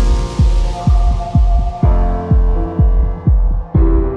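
Background music: a cymbal crash opens a steady beat of deep bass-drum hits that drop in pitch, about two a second, over a held synth tone.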